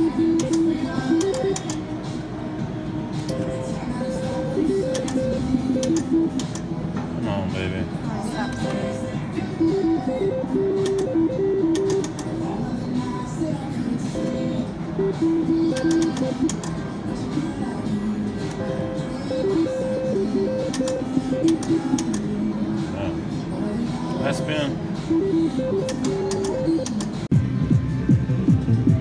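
Casino slot-floor din: music and strings of short electronic notes from slot machines, with voices in the background.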